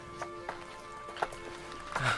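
Radio-drama background music of sustained held notes, with a few scattered footsteps over it as the characters set off walking.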